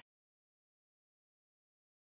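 Silence: a digital gap with no sound at all.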